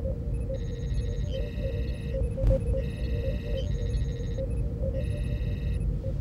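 Sci-fi starship bridge ambience: a steady low engine rumble under repeating patterns of electronic computer beeps and chirps. There is a single sharp click about two and a half seconds in.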